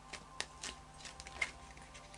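Tarot cards being handled and drawn from a deck: a few faint, short card clicks and snaps, the sharpest a little past the middle.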